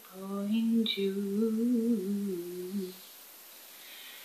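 A woman's voice humming a melody unaccompanied, in held notes, for about three seconds, then stopping.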